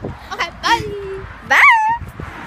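Girls' voices: short vocal sounds, a held note about a second in, and a loud, high-pitched rising squeal near the end.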